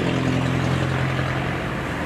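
Hand tractor's single-cylinder diesel engine running steadily as the tractor is driven through a muddy paddy field.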